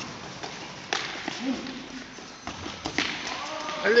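Indoor five-a-side football in a large sports hall: about three sharp knocks of the ball being kicked and hitting the floor, amid players' running footsteps, in an echoing hall. A man shouts "Allez" at the end.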